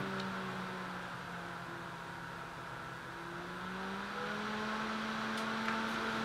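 Small DC cooling fan running with a steady whirring hum while its speed is varied from a power supply. The pitch sags a little, then climbs about four seconds in as the fan speeds up.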